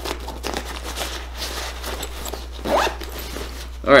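Zipper on an oversized fanny pack being worked by hand, a series of short rasping pulls.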